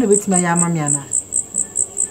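Crickets chirping in a steady, high-pitched pulsing trill, about six chirps a second.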